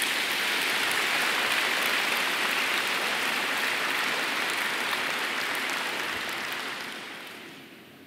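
Large audience applauding steadily, the clapping dying away over the last two seconds or so.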